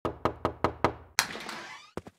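Knocking on a wooden door as an intro sound effect: five quick, even knocks, about five a second. A sudden hissing burst follows and fades out over most of a second, and a single short knock comes at the end.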